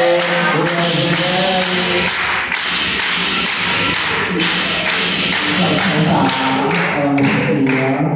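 A group of voices singing or chanting over a steady beat of hand claps. The voices drop back about two seconds in and come in again near the end.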